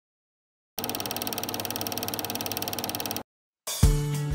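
Cine film projector running: a fast, even mechanical clatter that starts about a second in and cuts off suddenly. Music with plucked notes begins near the end.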